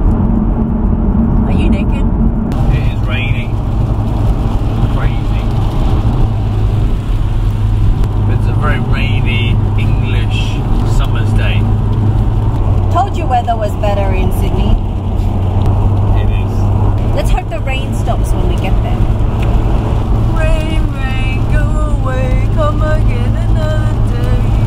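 Mitsubishi Lancer Evolution heard from inside the cabin at motorway speed: a steady low drone of engine and road noise on a wet road.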